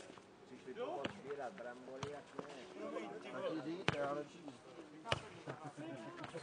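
A nohejbal ball being played in a rally on a clay court: about five sharp, short hits, the loudest near four seconds in, with men's voices talking.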